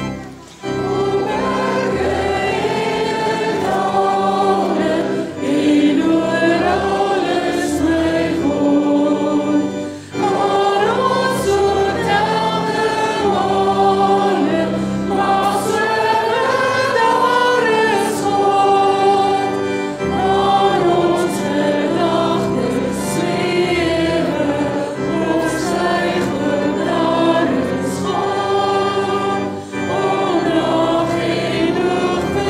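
Live church worship band: women singing an Afrikaans worship song into microphones over sustained keyboard chords and guitar accompaniment, with brief pauses between phrases.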